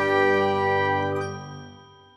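A struck chime ringing on in several steady tones from an outro jingle, dying away and fading out near the end.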